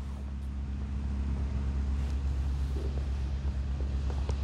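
Steady low drone of running machinery, like an idling engine, with a few faint light knocks in the second half.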